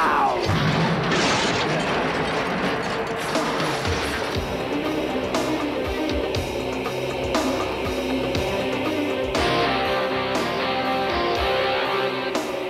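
Rock soundtrack music with guitar, joined by a steady drum beat about four seconds in.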